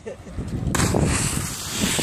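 A person in a wetsuit jumps feet-first off a pier into the sea. The water splashes as they hit it, a sudden rush of noise about three-quarters of a second in that lasts about a second.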